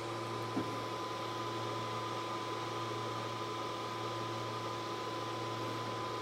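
Laser engraver sitting idle with its cooling fan running: a steady low hum with a thin, constant whine above it and one faint click about half a second in.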